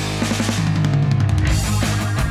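Background music with a drum kit and a deep bass line.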